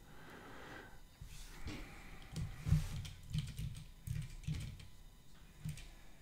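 Typing on a computer keyboard: a run of irregular, fairly quiet keystrokes.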